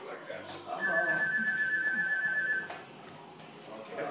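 A steady high whistling tone, held level for about two seconds, over faint voices in the room.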